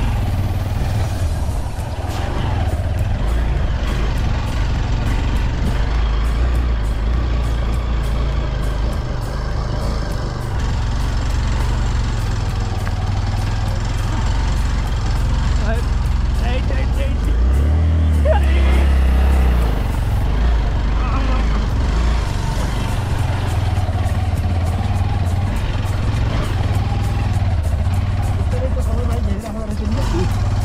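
Bajaj Pulsar 200 motorcycle engine running at low speed as it climbs a rough, rocky dirt track, with a heavy rumble and jolting from the stony surface. The engine note shifts briefly a little past the middle.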